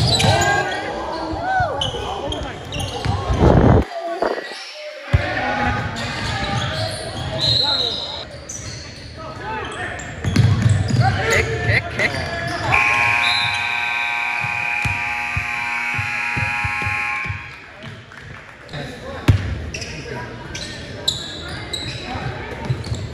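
Basketball game in a gymnasium: a ball bouncing on the hardwood, players and spectators shouting. About thirteen seconds in, a gym scoreboard horn sounds one steady blast for about four and a half seconds.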